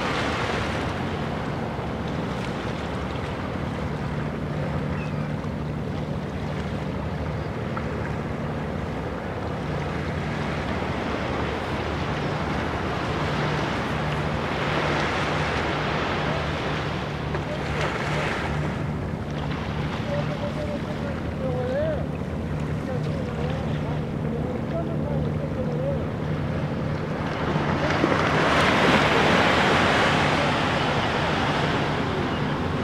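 Small waves lapping and washing up onto a sandy beach in a calm bay, the wash swelling now and then, loudest near the end. A steady low hum runs underneath.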